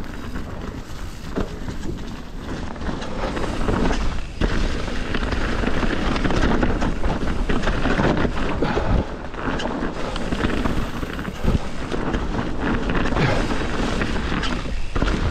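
Mountain bike riding fast down a dirt woodland trail: tyres rumbling over the ground and the bike rattling and knocking over bumps, with wind buffeting the camera microphone. It gets louder about four seconds in.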